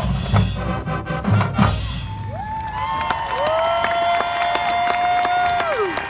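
Marching band's closing brass chords and bass drum hits, ending about two seconds in, then the stadium crowd cheering and clapping, with long held cries that slide up in pitch and drop off near the end.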